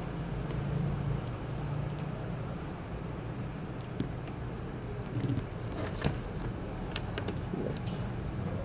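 Steady low background hum, with a few light clicks and taps of hands handling a laptop, about four, six and seven seconds in.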